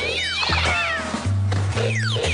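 Cartoon soundtrack: music with a steady bass line, under a cartoon cat's cry as it leaps and several quick falling whistle-like sound effects near the start and again near the end.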